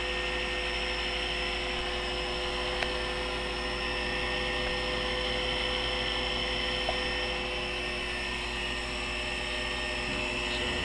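Taig CNC mini mill's spindle running steadily as its end mill cuts out a profile: an even, constant whine with two faint ticks.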